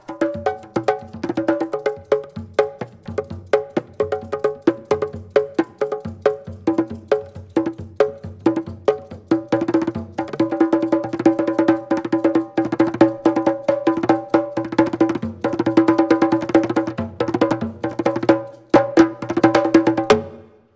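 Solo on congas: a fast run of hand strokes on several tuned drums, each ringing at its own pitch, growing denser in the second half and stopping sharply near the end.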